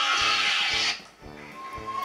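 Background music from a video compilation. A loud noisy burst covers roughly the first second, then the music carries on more quietly.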